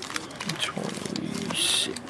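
Foil trading-card pack wrappers crinkling as packs are handled on a table, with light clicks and one loud, sharp burst of crackle near the end. A low voice murmurs underneath.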